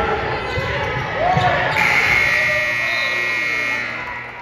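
Gym scoreboard buzzer sounding one steady tone for about two seconds, starting a little under halfway in, signalling a stop in play. Before it, a basketball is dribbled on the hardwood court, with players' voices in the echoing gym.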